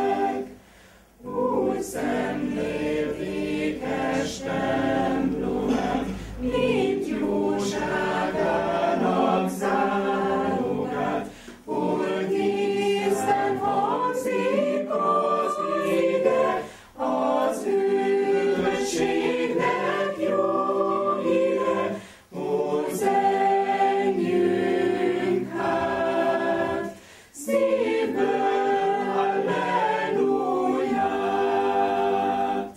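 A choir singing a hymn unaccompanied, in sustained phrases with brief pauses between them.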